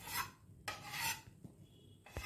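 Two short rasping scrapes, the second one longer, about half a second.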